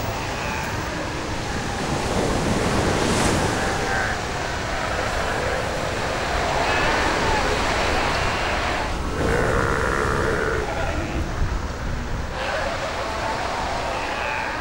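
Steady surf washing on the beach, with South American sea lions in the colony calling at intervals over it.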